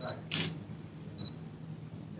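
A single camera shutter click about half a second into a quiet pause, over a steady low hum.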